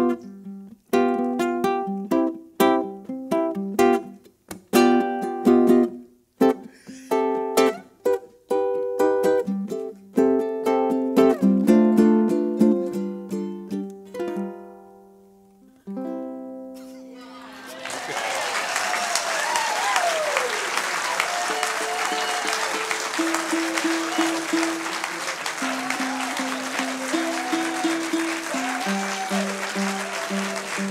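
Solo ukulele playing a chord-melody passage that ends on a long ringing final chord about halfway through. Then the audience applauds, with cheers and whoops running through it.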